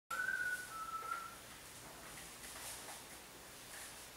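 A brief high whistle: two held notes, the second slightly lower, lasting just over a second, then faint room hiss.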